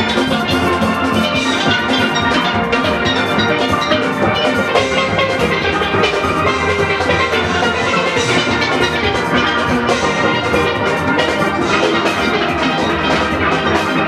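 A steel band playing, many steel pans ringing out quick melodic notes continuously.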